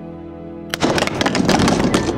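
Ceramic vase hitting the floor and shattering about three-quarters of a second in: a sudden crash, then about a second of clattering shards, over background music.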